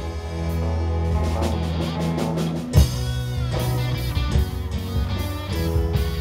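A live rock band playing an instrumental passage: electric guitars over sustained bass guitar notes and a drum kit, with one loud hit about three seconds in.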